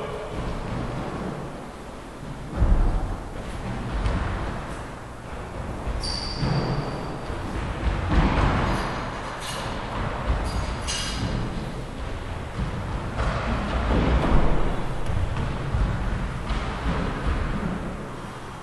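Racquetball rally in an enclosed court: the ball thudding off the walls and racquets, echoing through the court, with a few sharp shoe squeaks on the wooden floor. The loudest thuds come about two and a half, eight and fourteen seconds in.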